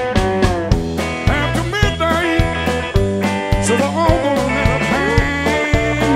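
Live rock band playing an instrumental break: electric guitar lines with bent notes over bass and a steady drum beat, heard through the PA.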